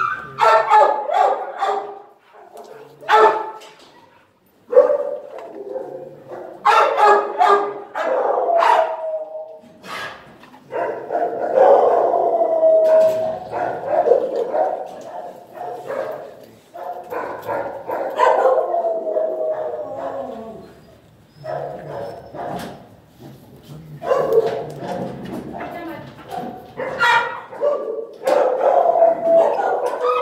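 Dogs barking in irregular bouts, with a few longer drawn-out calls and short lulls in between.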